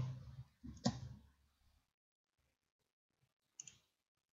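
Computer keyboard keystrokes in the first couple of seconds, one sharp keystroke about a second in, then a single mouse click near the end, with near silence between.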